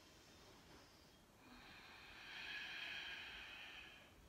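A person's slow, faint exhale, swelling about a second and a half in and fading near the end: steady breathing while holding a yoga pose.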